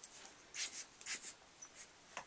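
Faint rustling of fingers working through hair, in a few short brushing strokes.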